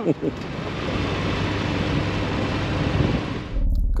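Harley-Davidson V-twin motorcycle engine running under way, mixed with wind noise on the microphone, its pitch rising near the end before it cuts off.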